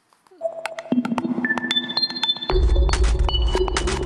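Electronic music sting for a TV news channel's logo ident: short synth pings at changing pitches over sharp clicks, with a deep bass coming in about two and a half seconds in.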